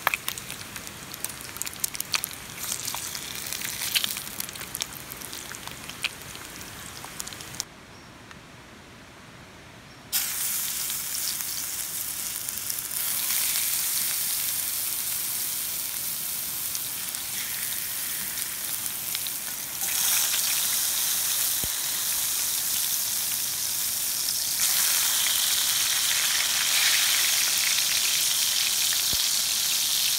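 Bacon frying in a cast iron skillet, spitting with many sharp pops. After a short quieter stretch, whole tomatoes fry in the hot bacon fat with a steady sizzle that gets louder in steps.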